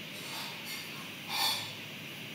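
A short, noisy breath close to the microphone about one and a half seconds in, with a fainter one earlier, over steady background hiss.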